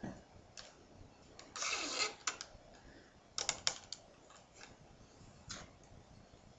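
Faint clicks and a short scratchy rustle of round reed being threaded and pulled by hand through the woven stakes of a small reed basket. The rustle comes about a second and a half in, a quick cluster of clicks follows in the middle, and a single click comes near the end.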